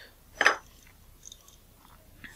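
A small precision screwdriver and a metal lens diaphragm assembly being handled on the bench: one sharp click about half a second in, then a few faint ticks.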